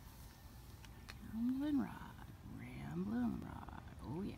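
A man's voice making two drawn-out, wordless vocal calls, each rising then falling in pitch, the first about a second and a half in and the second about three seconds in.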